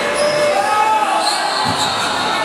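Live sound of an indoor basketball game: shouting voices echoing around a large gym, with the ball bouncing on the court.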